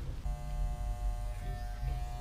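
Electric hair clippers buzzing steadily while trimming a man's hair, starting about a quarter of a second in.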